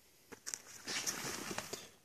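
Nylon gear bags being handled: soft fabric rustling with a few light clicks, starting about a third of a second in and stopping just before the end.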